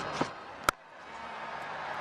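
A single sharp crack of a cricket bat striking the ball, followed by crowd noise that swells steadily as the shot is hit.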